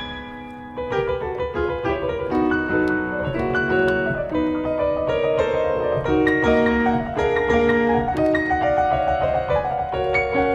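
Solo piano played with both hands: chords with a melody line above. It starts with a brief softer moment of held, fading notes, and the playing picks up again just under a second in and carries on steadily.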